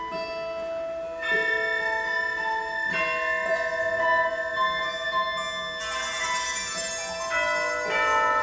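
A Russian folk-instrument orchestra of domras, balalaikas and gusli plays a contemporary concert piece. It sustains ringing, bell-like chords that shift every second or two, with a bright high shimmer swelling in near six seconds.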